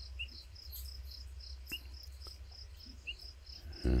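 Night insects, crickets, chirping steadily: a fast train of short high pulses about four a second, with another caller giving a single short, lower chirp every second and a half or so, over a low steady rumble.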